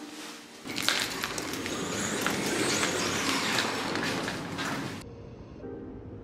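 Close rustling of a fabric duvet with handling noise and scattered clicks for about four seconds, cutting off suddenly; quiet background music follows.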